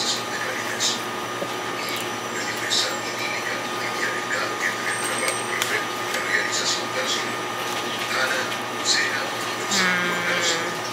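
Steady electrical hum of a small eatery's appliances, with scattered short crackles as crispy fried empanadas are bitten and chewed.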